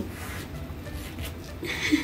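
Faint rubbing and rustling of a Michael Kors wallet being opened by hand, with a brief vocal sound near the end.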